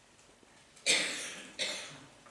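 A person coughing twice: a loud cough about a second in, then a softer one about half a second later.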